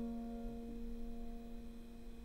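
A held chord on a digital piano, several notes ringing together and slowly fading.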